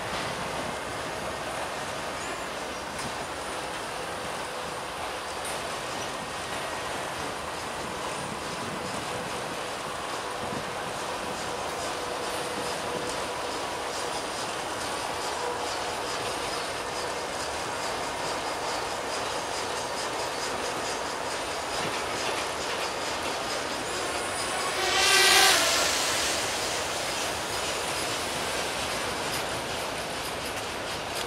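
A freight train of autorack cars rolling steadily past, wheels clicking over the rail joints with faint steady squealing tones. About 25 seconds in a brief, loud, high-pitched sound rises over it.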